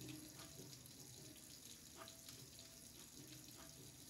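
Faint, steady stream of a kitchen faucet running into a stainless-steel sink, with a few soft scrapes of a vegetable peeler on a potato.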